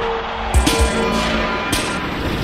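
Dark industrial techno from a DJ mix: a steady held tone over a low pulsing beat, with hissing noise sweeps about once a second.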